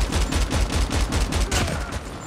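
Video-game minigun firing a rapid, continuous burst of gunfire that cuts off near the end.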